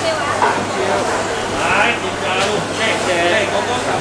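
Voices in a busy market hall, several people talking at once, over a steady low hum.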